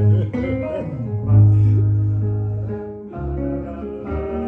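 Live instrumental music: a guitar plucking notes over long, held low bass notes that swell and fade one after another.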